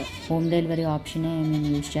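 Goats bleating in a crowded pen: two long, level bleats one after the other.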